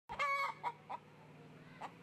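A brown hen clucking: one drawn-out cluck of about a third of a second, then three short clucks.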